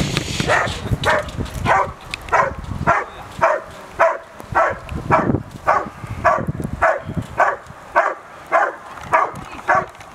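German shepherd barking steadily and repeatedly, about two barks a second, at a decoy hidden in a protection-training blind: the bark-and-hold (guarding bark) of IPO protection work.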